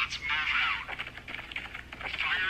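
A TikTok video's audio playing through a phone's small speaker: a thin, high-pitched voice with light clicks, missing all the low end.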